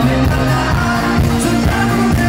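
Live pop band music played through a PA, with drums, bass and keyboard keeping a steady beat.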